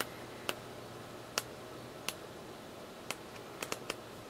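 Pages of a cardstock paper pad flipped one at a time, each page snapping free of the thumb with a short, sharp tick; about eight ticks at uneven intervals, several in quick succession near the end.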